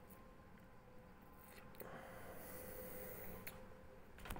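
Near silence: room tone with a faint steady hum, and a soft breath through the nose in the middle.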